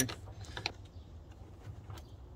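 A few light metallic clicks as a wrench loosens the clamp bolt on the negative battery terminal, disconnecting it from the battery post.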